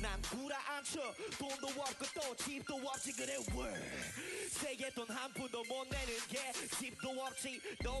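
A male rapper rapping in Korean over a hip hop beat, with deep bass notes landing near the start, about three and a half and six seconds in, and again at the end.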